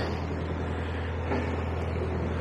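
Narrowboat engine running steadily with a low, even hum while the boat is manoeuvred back toward the bank.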